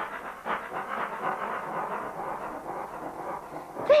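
A steady, noisy rattling sound effect as the tangram pieces tumble apart and slide together, fading just before speech returns near the end.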